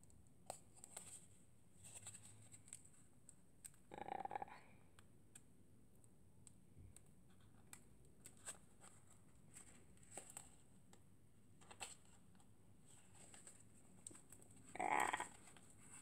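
Mostly near silence, with faint scattered clicks and scratches of fingernails picking at the label that seals a small round wooden box, which is hard to open. A brief louder rustle comes about four seconds in, and two strained grunts of effort near the end.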